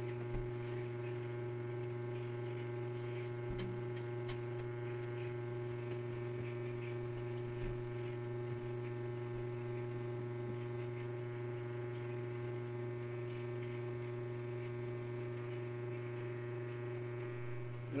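Steady electrical hum, a low drone with a stack of higher overtones above it, with a few faint small clicks.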